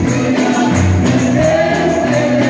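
Congregation singing a gospel hymn over a band accompaniment, with a steady bass line and a regular percussion beat, and hand clapping in time.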